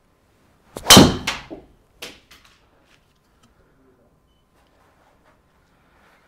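Golf driver striking a ball off a tee on a full-power swing: one sharp, very loud crack about a second in, followed by a few fainter knocks over the next second and a half.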